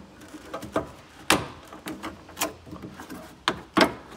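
Plastic trim panel in a Tesla Model S frunk being worked loose by hand against its retaining clips: an irregular series of sharp plastic clicks and knocks, the loudest about a second in and another near the end.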